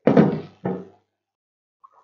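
Two dull knocks on a desk, the first louder and longer, as a drinking bottle is set down.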